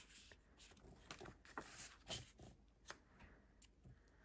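Faint rustles and a few light taps of photo prints being slid and set down on paper.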